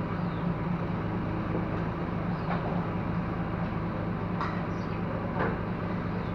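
A truck-mounted crane's diesel engine idling steadily with a low hum. A few light metallic knocks come about midway and near the end.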